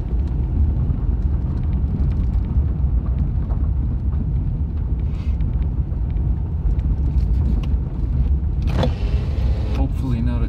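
Inside a vehicle's cabin while driving slowly on a gravel road: steady low rumble of engine and tyres on the gravel. A man's voice comes in briefly near the end.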